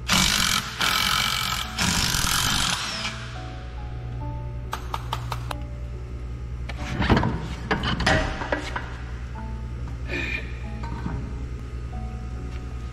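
Cordless drill-driver running in three short bursts during the first three seconds, over background music. A few clicks and knocks follow later.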